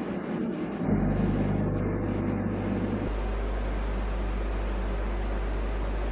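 KEPUNI orbital TIG welding machine starting its automatic cycle. A steady low machine hum begins about a second in and changes about two seconds later to a lower, even drone.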